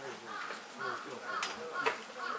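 A bird calling repeatedly, about two harsh calls a second, over faint murmuring voices, with two sharp clicks in the second half.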